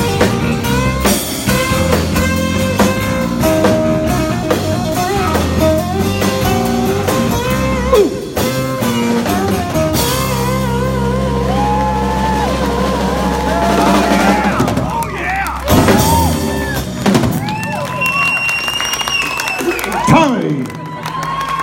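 Live acoustic rock band playing a song with singing: acoustic guitar, bass guitar and drums. It is closing out on long held chords and notes.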